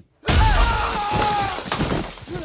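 Film sound effect of a plate-glass shop window shattering as two men are blasted through it. The crash starts suddenly about a quarter second in, and breaking glass and debris go on for about two seconds, with a wavering pitched tone running through it.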